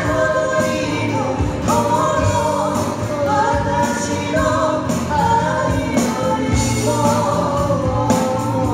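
Live band: a woman singing a Japanese pop ballad, backed by acoustic guitars and drums.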